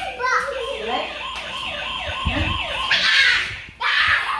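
Battery-powered toy police car sounding its electronic siren, a quick falling wail repeated about four times a second.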